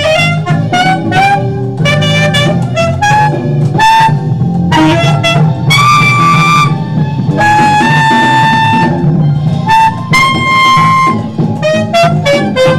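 Saxophone playing a smooth jazz melody over a backing track with bass and drums. Quick runs of short notes fill the first few seconds, then come several long held notes.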